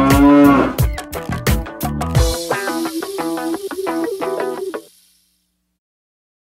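A cow moos once near the start, one call that rises and then falls in pitch, over music with a beat. The music runs on with plucked notes and stops about five seconds in.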